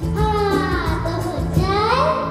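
A young girl singing a Hindi film song into a microphone over instrumental accompaniment with a steady beat.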